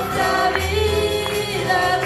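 A woman singing a Spanish-language worship chorus into a microphone over a church PA, accompanied by acoustic guitar and keyboard, holding long notes.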